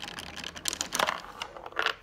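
Three dice clattering on the motor-driven revolving table of a 1933 Bally Bosco electric dice trade stimulator: a rapid run of clicks and rattles that stops near the end.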